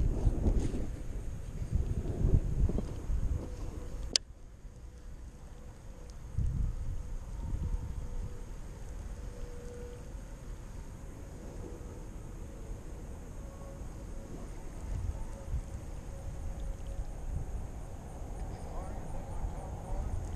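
A baitcasting rod cast, with wind and handling buffeting the microphone. A sharp click comes about four seconds in, then the baitcasting reel is cranked steadily in a faint whir as the lure is brought back.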